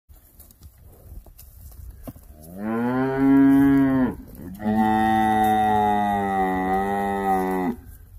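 A cow mooing: two long, steady moos with a short break between them, the second about twice as long as the first.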